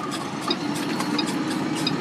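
Semi-truck's diesel engine running at a steady pitch, heard from inside the cab while the truck is driven. A light tick repeats about every two-thirds of a second.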